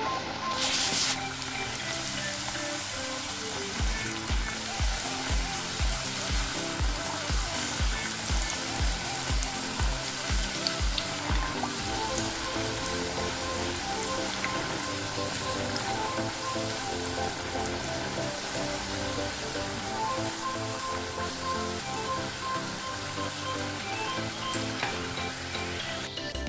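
Fini roti dough deep-frying in hot oil in a kadai, a steady sizzle. Background music plays over it, with a regular low beat from about four to twelve seconds in.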